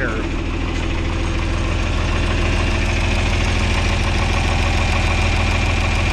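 A John Deere 4020's six-cylinder diesel engine idling steadily, with a ticking that the owner notices and cannot place.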